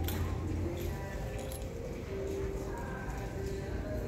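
Retail store ambience: a steady low hum with faint voices in the background and several light clicks and clinks scattered through it.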